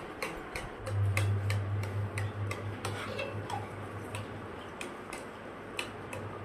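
Steady light mechanical ticking, about two to three ticks a second, over a low hum that comes in about a second in.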